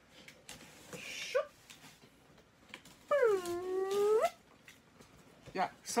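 A man making a wacky, howl-like noise with his voice for about a second, its pitch dipping and then rising, about three seconds in. Before it come a short hissing rasp and a few light clicks.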